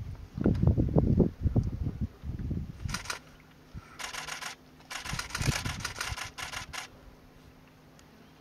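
A DSLR camera shutter firing in rapid continuous bursts, three runs of fast clicks, the last about two seconds long. Before them come a couple of seconds of loud, irregular low thumps and rumbles.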